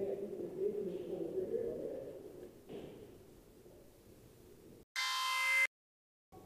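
Faint voices echoing in a large indoor hall, fading out over the first few seconds. About five seconds in, a short, loud electronic tone-like sound effect rings for under a second and cuts off abruptly into dead silence, an edit point in the video.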